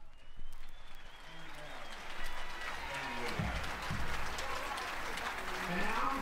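Live audience applauding, many hands clapping, with a man's voice talking over the clapping.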